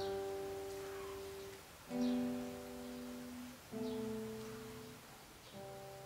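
Acoustic guitar played solo: four slow chords, each struck and left to ring out and fade, about two seconds apart. These are the closing chords of the piece.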